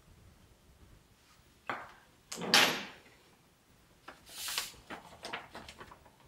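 Handling sounds as iodized salt is added to a plastic measuring jug of developer and stirred with a spoon: a click, a louder short clatter about two and a half seconds in, a brief hiss about four seconds in, then a few light taps.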